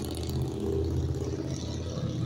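A steady low mechanical hum, like a motor or engine running, with no change through the pause.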